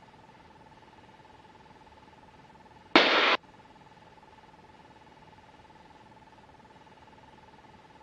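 Faint headset-intercom feed in a light aircraft: a steady thin electrical whine. About three seconds in it is broken by one short burst of hiss, lasting about half a second, as a mic opens briefly without speech.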